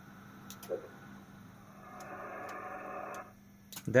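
Faint hiss of band noise from an HF transceiver's speaker on single sideband, rising about two seconds in and cutting off about a second later, with a few faint clicks over a low steady hum.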